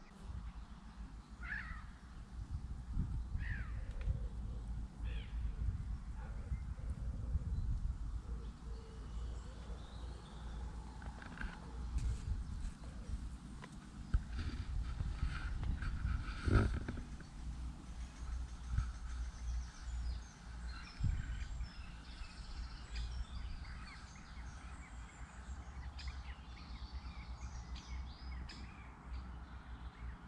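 Outdoor lakeside ambience: a steady low rumble on the microphone, with a few short bird calls and scattered clicks.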